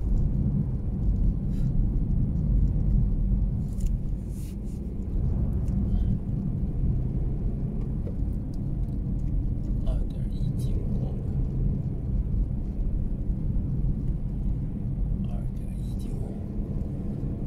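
Steady low rumble of a car driving along a street, heard from inside the cabin, with a few faint clicks.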